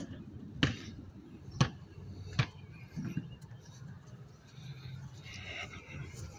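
A basketball bouncing on a concrete pad after dropping through the hoop: three sharp bounces, each a little closer to the last, then the ball rolls away quietly.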